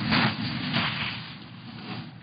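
Noise on a microphone that has just been switched on in a large chamber: two brief rustling swells early on, then low steady room noise.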